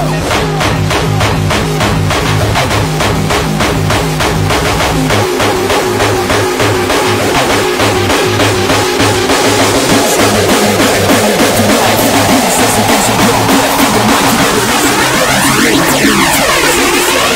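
Hardcore electronic dance music played by a DJ, driven by a pounding, evenly repeating kick drum with a bass line that changes pattern about five seconds in. A sweeping effect curves through the sound near the end.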